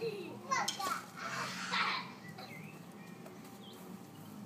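Toddlers making wordless vocal sounds while playing: a few short calls and a louder breathy cry in the first two seconds, then only small faint sounds.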